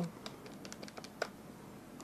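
Keys of a handheld electronic calculator being pressed: a quick run of faint clicks, one a little louder about a second in.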